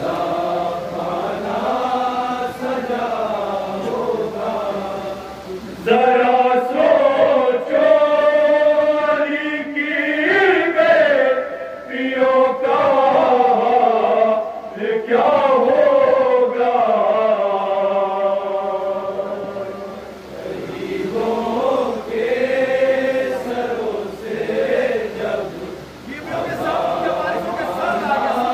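A group of men chanting an Urdu noha, a Shia mourning lament, together in long held, gliding phrases. It grows louder about six seconds in and eases briefly near the end.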